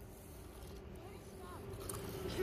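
Faint outdoor background: a steady low hum under a soft wash of noise, with faint distant voices.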